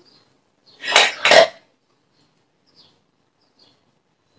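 Two short, loud, sharp breath sounds close together at the mouthpiece of a three-ball incentive spirometer, about a second in.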